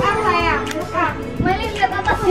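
A child's high singing voice in a pop song, the pitch wavering and gliding, over a light backing track.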